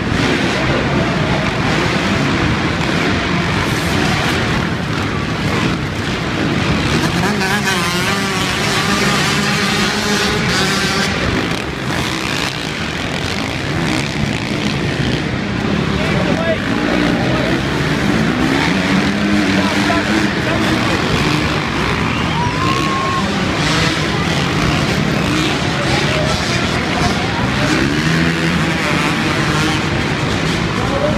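Several dirt bikes racing on an arenacross track, their engines revving up and down over and over, mixed together in a steady loud drone.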